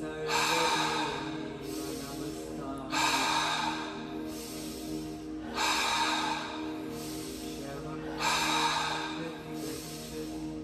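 Rhythmic breathwork breathing, a loud breath about every two and a half seconds, each lasting a little over a second, over steady ambient music.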